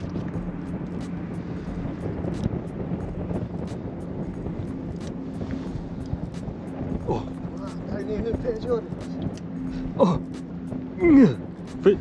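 A steady low mechanical hum under wind noise, with people talking in the last few seconds.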